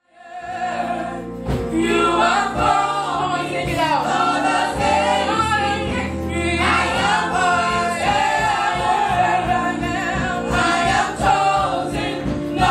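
Live gospel singing: a woman sings into a handheld microphone over sustained instrumental backing, fading in from silence at the start.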